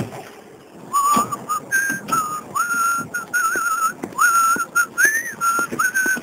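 Whistling of a wandering tune that starts about a second in: short phrases of held, wavering notes with brief gaps between them. Soft, irregular knocks sound underneath.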